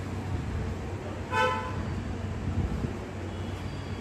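A single short vehicle horn toot about a second and a half in, one flat tone, over a steady low background hum.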